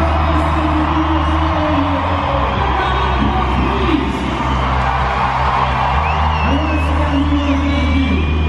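Live electronic dance music through an arena sound system: long held synth bass notes, dropping away for a few seconds in the middle and coming back, with a large crowd cheering and whooping over it.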